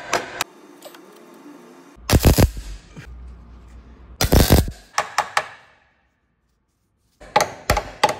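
A hammer knocking a steel repair panel into position, then two short bursts of MIG tack welding of about half a second each, tacking the panel into the sill. Several more sharp hammer knocks come near the end.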